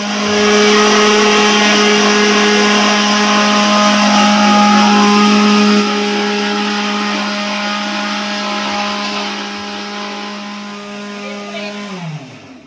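Electric kitchen mixer grinder with a steel jar running continuously at high speed: a loud, steady motor hum and whine. It gets a little quieter about halfway through, and its pitch falls as it winds down at the end.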